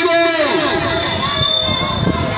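A man shouting a slogan into a microphone, holding one long syllable on a steady pitch that breaks off about half a second in, followed by crowd noise.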